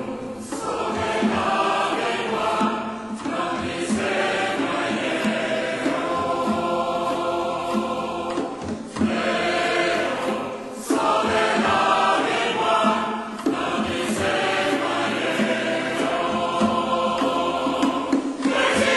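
Background music with a choir singing.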